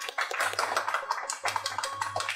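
A group of people clapping: a dense run of uneven hand claps.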